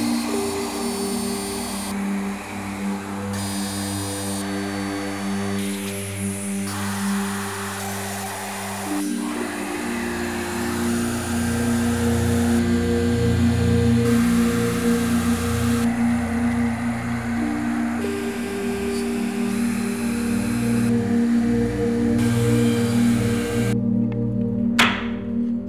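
Ambient instrumental music with long sustained tones, over the noise of a Shaper Origin handheld CNC router cutting plywood; the router noise jumps up and down in abrupt steps.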